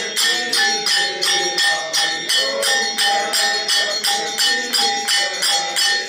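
Temple aarti bells and jingling percussion struck in a steady even beat, about two and a half strikes a second, with a ringing bell tone held over the beat.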